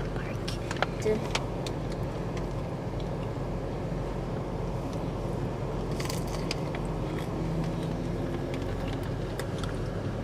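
Steady low hum of a car's idling engine heard inside the cabin, with scattered small clicks and taps from food being handled.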